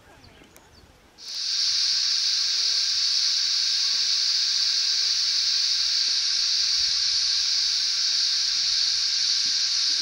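A steady, high hiss that starts suddenly about a second in and holds an even level.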